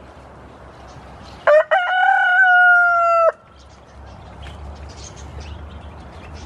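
A white rooster crows once, about a second and a half in: a short first note, then one long held note that falls slightly and cuts off suddenly, under two seconds in all.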